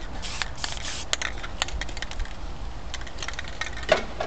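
Spray paint can of white paint hissing for about a second, then sputtering in short spits and clicks from a poorly working nozzle, which flicks the paint out as specks rather than a fine mist.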